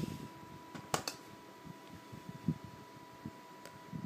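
Faint handling noise as a metal Blu-ray steelbook case is turned in the hand: a sharp click about a second in and a few soft taps, over quiet room tone with a steady faint high tone.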